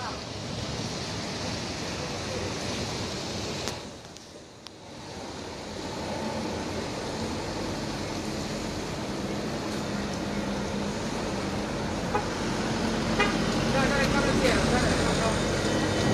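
Road traffic on a wet road: car and truck engines running and tyre noise, with a car horn tooting and voices in the later part.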